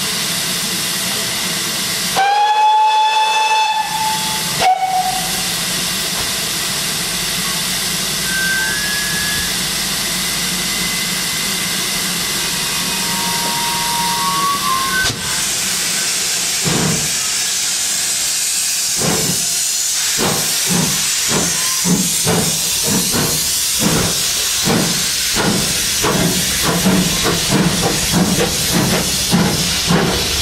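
GWR Castle Class four-cylinder 4-6-0 steam locomotive 4079 Pendennis Castle, double-heading with a second engine, hissing steam, sounds one whistle for about two seconds, then a brief second toot. About halfway through the train starts away: the exhaust beats are slow at first and quicken steadily, over steam hissing from the cylinders.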